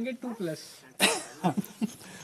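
A man coughs once, sharply, about a second in, with brief snatches of men's voices around it.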